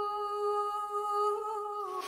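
A voice humming one long, steady note that dips slightly in pitch and stops near the end.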